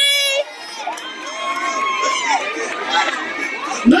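Theatre audience cheering and screaming, many high voices whooping at once; the noise dips briefly about half a second in, then builds back up.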